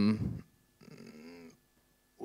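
A man's voice: the end of a drawn-out hesitant 'euh' that stops about half a second in, followed by a fainter, short vocal sound, then silence.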